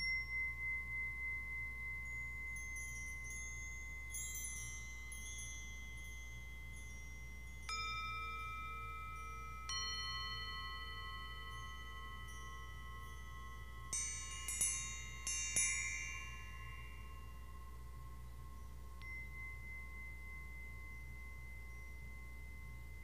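Hand-struck metal chimes ringing one at a time, each clear tone hanging on for many seconds, the first pulsing as it fades. A quick run of bright, high tinkling strikes comes about two-thirds of the way in, then the tones die slowly away.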